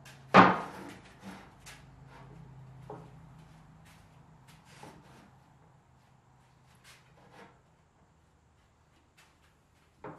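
A wooden board set down hard on a wooden cart frame with one loud clack about half a second in, followed by lighter knocks and taps as boards are shifted into place, fading out over the following seconds.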